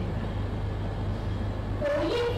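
A steady low hum with even background noise, and no voice.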